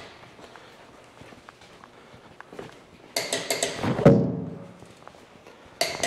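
A run of knocks and clatter about three seconds in, ending in a heavy thunk with a short metallic ring that fades over about a second. A few more sharp clicks follow near the end.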